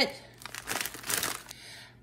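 Plastic salad-kit bag crinkling as it is handled and set down, a crackly burst lasting about a second.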